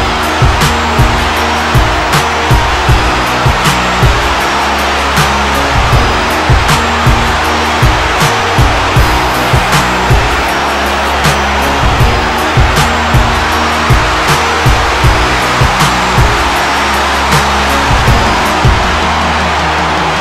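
Background music with a steady beat about twice a second over sustained low bass notes.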